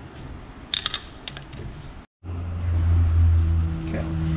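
A wrench clinking against the steel lock nut and case of a power steering pump, a few sharp ringing metal clinks about a second in, then lighter ticks. After a sudden cut about halfway through, a loud steady low hum takes over.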